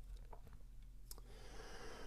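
Very quiet room tone with a couple of faint light clicks and a soft rustle in the second half: small handling noises from hands working at a fly-tying vise.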